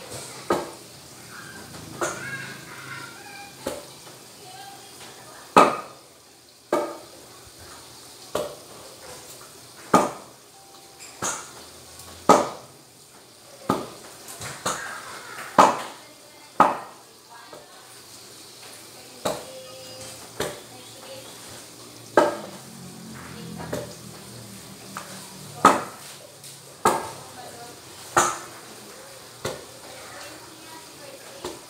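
Wooden pestle pounding boiled bananas in a stainless steel pot, sharp knocks about once a second, at an uneven pace with short pauses.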